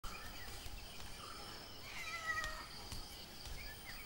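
Faint rural background ambience with scattered high bird chirps, and a single held animal call about two seconds in.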